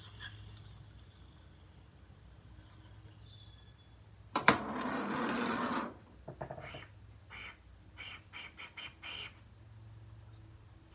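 Glass dab rig being hit: about four seconds in, a sharp click and a loud rush of noise lasting about a second and a half, followed by a string of short bursts as air is drawn through the rig's water.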